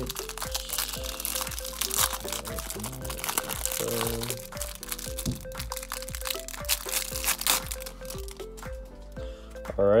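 Thin plastic wrapper around a stack of trading cards crinkling and crackling as it is torn open and peeled off the cards, busiest in the first half, with background music playing under it.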